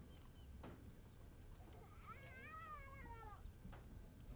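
Near silence, broken about two seconds in by one faint, wavering call that rises and then falls over about a second and a half. Two soft clicks come before and after it.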